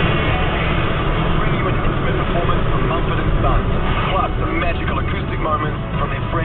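Steady low rumble of a car's engine and tyres heard from inside the cabin while driving, with radio speech playing over it from about four seconds in.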